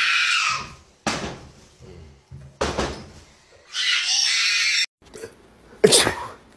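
A person's long, high-pitched scream that trails off about half a second in, a couple of sharp knocks, then a second scream that cuts off abruptly near five seconds.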